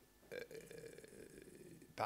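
Near silence, broken by a man's short throat sound about a third of a second in, followed by a faint drawn-out hesitation sound ('euh') while he searches for a word.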